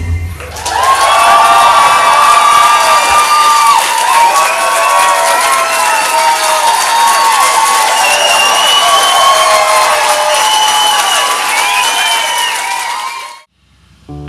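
Live concert audience cheering and shouting at the end of a song, many voices over a dense wash of crowd noise. The cheering swells in within the first second and fades out near the end.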